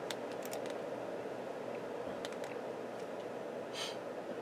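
Steady hum of running computer equipment, with a few faint mouse clicks in the first second and again around two seconds in, and a brief hiss just before the end.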